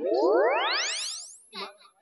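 A comic sound effect: a cluster of staggered tones sweeping steeply upward for about a second, then holding a thin, high steady tone. A few words of speech come in over its tail.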